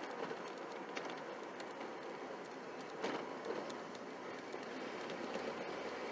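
Ford Ranger pickup with a swapped-in 2.5-litre four-cylinder, heard from inside the cab while cruising slowly at light throttle and low revs: a steady engine and road hum. A couple of brief knocks come through, one at the start and one about halfway.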